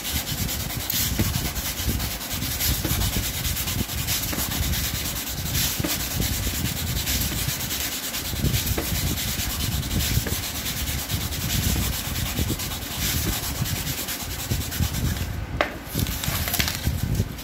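A small knife blade being worked through thick thermocol (polystyrene foam), the foam rubbing and grating against the blade in a continuous, uneven noise as the cut follows a curved line.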